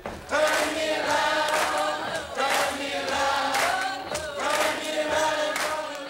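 A group of voices singing together in long held notes, a slow song carried by many people at once.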